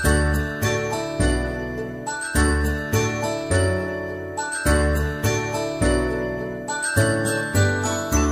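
Instrumental children's background music with chiming, bell-like notes over a bass line, no singing.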